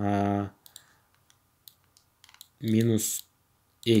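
Faint, scattered clicks and taps of a stylus on a pen tablet while handwriting, between a man's drawn-out "uh" at the start and a short spoken syllable near the end.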